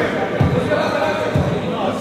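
Players' voices echoing in a large sports hall, with two dull low thuds about a second apart.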